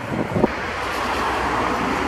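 Wind buffeting the microphone for the first half-second, then the steady tyre and engine noise of a car approaching on the road, slowly growing louder.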